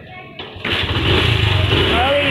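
Small motorcycle engine starting: after a click, it catches about two-thirds of a second in and then keeps running steadily.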